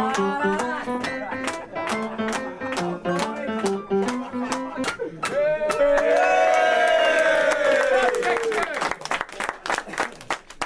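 A piano played with a bouncy tune while a group of men clap along in rhythm. About halfway through, one man sings out a long loud note that rises and then falls away, and clapping carries on at the end.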